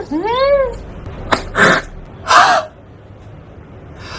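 Two short meow-like cries, each rising then falling in pitch, the second longer, followed by two short breathy bursts.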